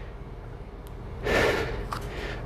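A short, noisy breath through the nose or mouth, about half a second long and a little over a second in, from a man holding a plank.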